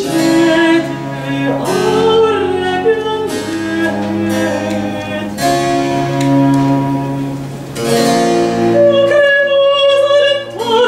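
A female classical singer sings a baroque vocal piece in long held notes, accompanied by a bowed cello and a plucked harpsichord.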